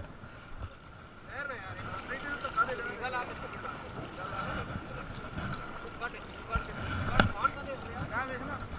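Faint background voices with a steady thin whine under them, and two sharp knocks about a second apart near the end.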